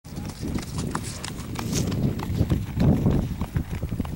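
Hoofbeats of a horse trotting on a dirt arena.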